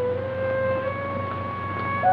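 Film-score music: a slow melody of long held notes that shift in small steps, over a steady low hum.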